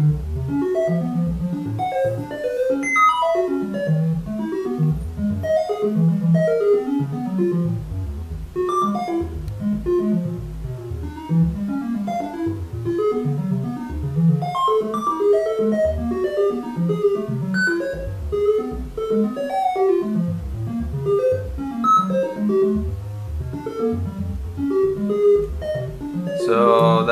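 Modular synthesizer playing a quick, unbroken stream of short pitched notes whose pitch is set by a sample-and-hold sampling brown (red) noise. The melody wanders in small random steps and clusters around nearby notes, a 'drunken walk'.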